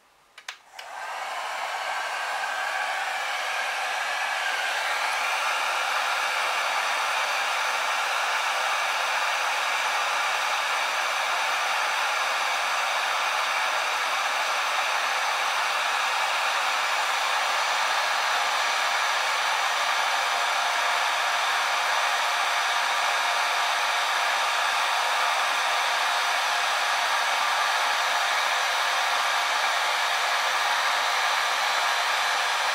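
Electric heat gun switched on about half a second in, its fan spinning up with a faint rising whine over the first few seconds, then running steadily with an even blowing hiss.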